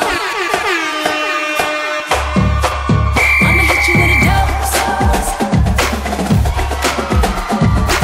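Hip hop dance-routine music: a falling pitch sweep with the bass cut out for about two seconds, then a heavy bass-and-drum beat drops in and carries on.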